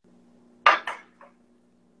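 A sharp clink, then a second quick one and a fainter tap about half a second later, over a faint low steady hum.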